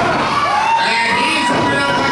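Wrestling crowd in a small hall shouting and cheering. From about half a second in, one high voice holds a long, steady yell.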